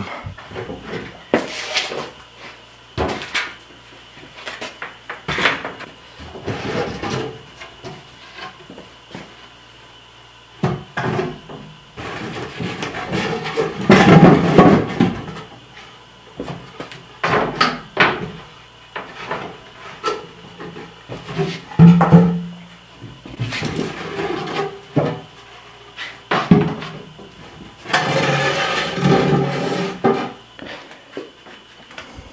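Plywood panels and wooden hardware-cloth frames of a chick brooder knocking, scraping and clattering as it is taken apart and stacked: a run of irregular wooden thumps, loudest around the middle.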